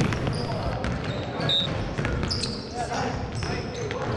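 Gym sound of basketball practice: balls bouncing on a hardwood court, with scattered knocks and a few short high squeaks from sneakers, against background voices.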